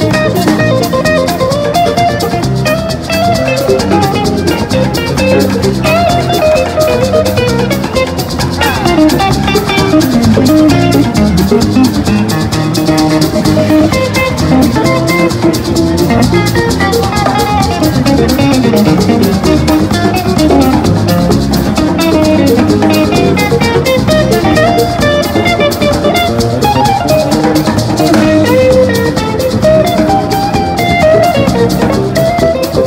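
A live instrumental jam of button accordion, electric guitar, electric bass and drum kit, with a steady shaker rhythm over the beat. Pitch bends run through the melody.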